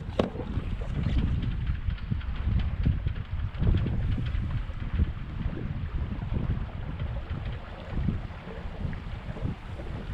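Wind rumbling on the microphone in uneven gusts aboard a small sailboat running under its motor.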